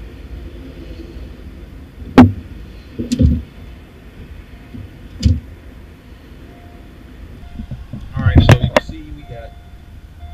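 Sharp plastic clicks and knocks from the dashboard center-channel speaker and its trim being handled and lifted out: three single knocks spread out, the first the loudest, then a quick cluster of knocks near the end, over a steady low rumble.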